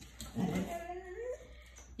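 A dog making soft, low vocal sounds, with a short rising note a little after a second in.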